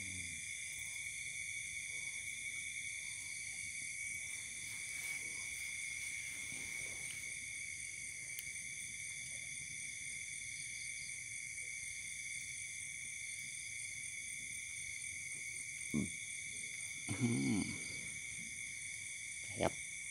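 A steady night chorus of crickets and other insects, several high pitches layered without a break. A short low sound comes near the end, then a man's cough.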